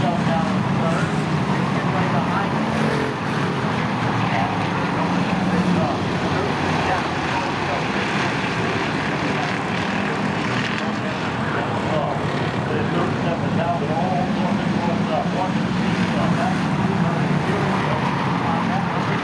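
A field of Pure Stock race cars running around a short oval, their engines blending into a steady drone, with people's voices over it.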